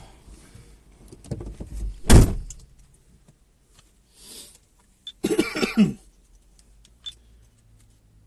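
Handling noises inside a car cabin: scattered knocks and rustles, with one heavy thump about two seconds in. A short sound falling in pitch comes about five seconds in.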